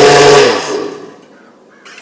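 Electric blender blending a protein shake in a short, loud burst: it runs at full speed for about half a second, then is switched off and the motor winds down, its whir falling in pitch and dying away by about a second in.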